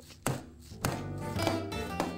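Hammer striking an expansion anchor bolt, driving it into a hole drilled in the stone porch floor: two sharp knocks within the first second. Background music carries on after them.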